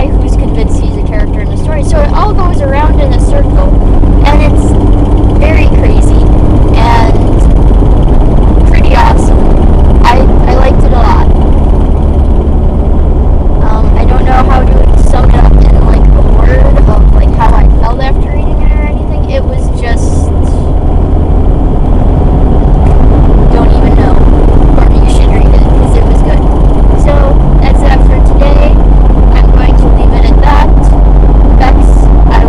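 Loud, steady low rumble of a car's road and engine noise inside the cabin while driving.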